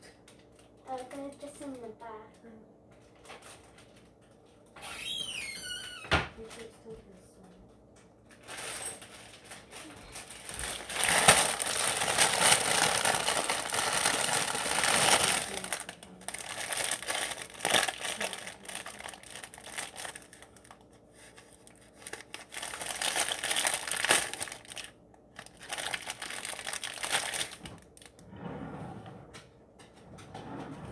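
Plastic bread bag crinkling as it is handled, a long stretch of dense crackling that is loudest for several seconds near the middle and comes and goes toward the end.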